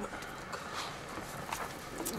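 A quiet pause of low room noise with a few faint, soft knocks.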